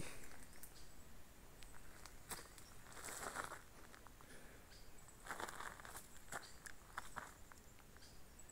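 Faint footsteps and rustling of brush and dry leaves as someone walks through dense scrub, with scattered small crackles of twigs.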